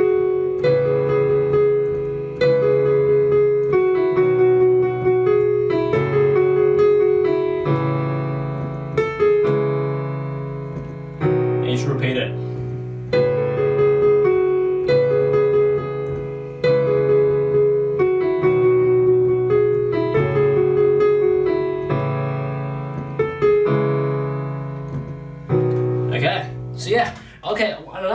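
Piano played with both hands: a slow right-hand melody over sustained left-hand chords, with a new note or chord about every one to two seconds.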